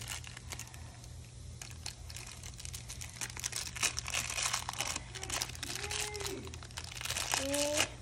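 Small plastic blind-bag wrapper crinkling as it is pulled open by hand, a steady run of quick crackles.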